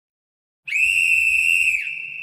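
A single high, steady whistle-like tone as the intro of a song, starting after about half a second of silence and held for about a second before dropping in pitch and level near the end.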